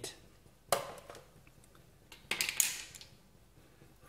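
Brief handling sounds of a bowl or utensils on a work surface: a knock about a second in, then a short scraping rustle a couple of seconds later.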